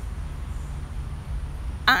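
Steady low rumble inside a car cabin, the car's engine and road noise heard from the seat.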